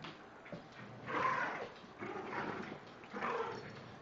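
Small senior dog growling in play over a toy: three short throaty growls about a second apart.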